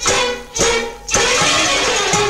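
Recorded music sample playing: short pitched chord stabs about half a second apart, each ringing on, the last held longer. They are separate individual notes that can be sliced apart and rearranged into a new melody.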